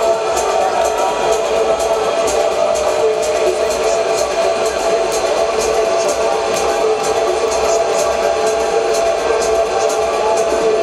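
Electronic dance music played loud through a club sound system: sustained synth tones over a steady beat of regular high ticks, running without a break.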